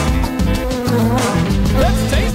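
Cartoon bee buzzing sound effect, a wavering buzz that rises in pitch near the end, over background music.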